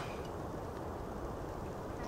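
Steady, faint outdoor background noise, a low even rumble and hiss with no distinct event in it.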